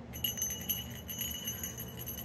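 A small bell in a toy hanging from a baby's play gym, jingling as the baby kicks it: a steady high ring with many quick little jingles over it.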